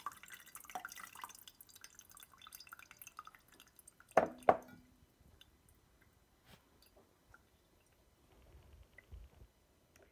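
Coffee dripping faintly and irregularly through the stainless mesh filter of a Bodum pour-over into its glass carafe. Two sharp knocks sound about four seconds in, a half-second apart.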